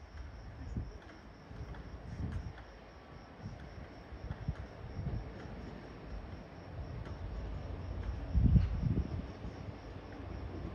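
Crickets chirping in a steady, high, evenly pulsing trill, over irregular low rumbles that are loudest about eight and a half seconds in.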